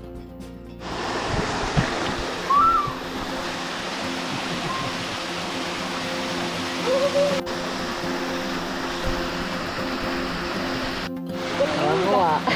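Background music, then from about a second in the steady rush of a small waterfall pouring into a rock pool, with the music continuing faintly underneath.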